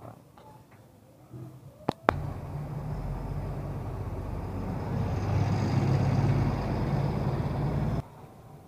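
Two sharp clicks about two seconds in, then a vehicle engine running steadily with a low hum, growing louder about halfway through and cutting off suddenly at the end.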